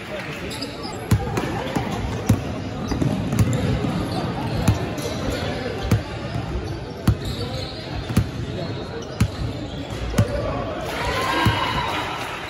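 A basketball being dribbled on a hardwood gym floor, sharp bounces coming about once a second, in a large gym. Players' voices call out over it, louder near the end.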